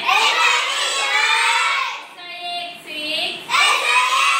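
A group of young children singing together in unison, high-pitched, in held phrases with short breaks about two and three and a half seconds in.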